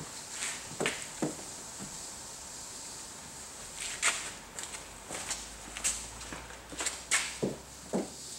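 A dampened dryer sheet being wiped over a car's rear window glass, with scattered footsteps and a few short scuffs and knocks.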